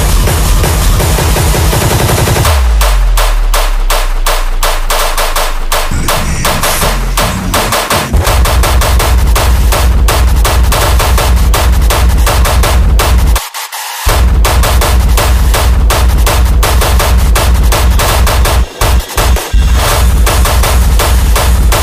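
Hard techno with a fast, pounding distorted kick drum. A falling low sweep comes about two seconds in, then the driving kick returns about eight seconds in. It cuts out for a moment around the middle and again near the end.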